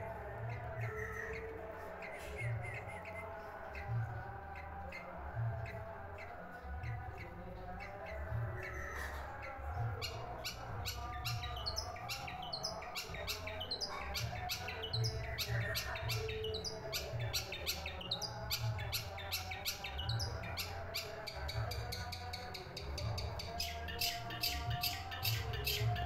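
Caged long-tailed shrike (cendet) singing a varied, chattering song. About ten seconds in it breaks into a fast run of sharp, rapid notes.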